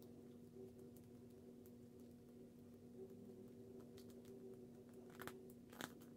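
Near silence: faint crinkles and clicks of paper sticker-book pages being turned by hand, over a faint steady hum.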